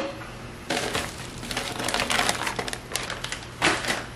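Brown kraft packing paper crinkling and rustling as hands rummage through a cardboard shipping box and lift parts out, in irregular crackly bursts starting about a second in, with a short louder rustle near the end.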